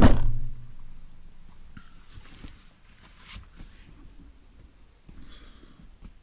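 A van door pulled shut with a single heavy slam right at the start, the thud dying away within about half a second. Faint small knocks and rustles follow.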